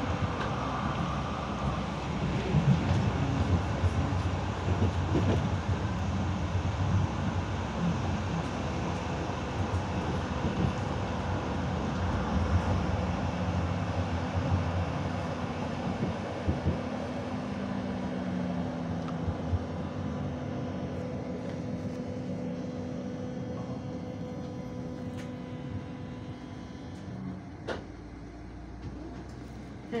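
Interior running noise of a Hannover-built TW 6000 tram in motion: a rumble of wheels on the rails with a faint steady whine. The rumble is louder in the first half and eases off in the second, leaving a steadier hum, with a single click near the end.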